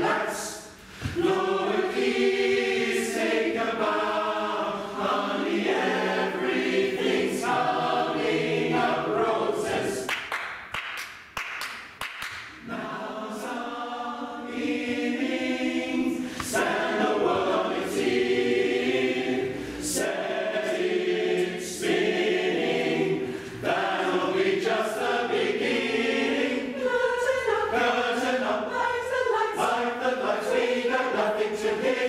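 Mixed-voice choir of men and women singing together, with a brief lull about eleven seconds in before the voices come back in.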